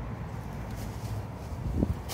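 A Carrick bend in braided rope being pulled tight by hand, with one short, sharp sound near the end as the knot flips into shape, over a steady low rumble.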